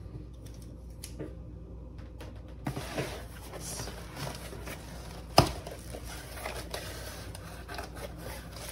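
Cardboard shipping box being opened by hand: starting about three seconds in, the flaps are pulled back with cardboard scraping and rustling, and one sharp knock a little past the middle.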